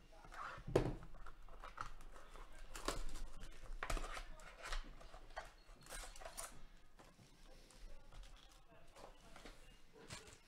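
Foil-wrapped trading card packs and cards being handled: irregular crinkling and rustling, loudest in the first half.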